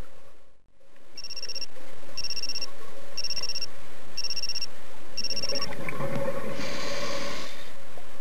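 Five short, high electronic beeps about a second apart, each a two-tone chirp. They are followed about six seconds in by a rushing breath through a scuba regulator, heard underwater.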